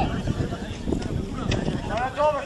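Distant shouts and calls of football players across an open pitch, with a couple of short faint knocks.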